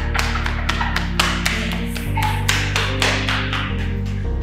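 Background film-score music: sustained low notes that shift about two seconds in and again near the end, under quick percussive taps about four or five a second.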